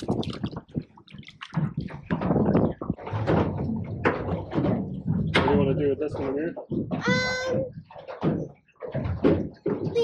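Indistinct voices talking, with a brief high-pitched held cry about seven seconds in.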